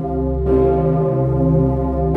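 The Pummerin, the roughly 20-tonne cast bell tuned to C that is Austria's largest, swinging and ringing. Its clapper strikes once about half a second in, over the deep humming ring of the previous stroke.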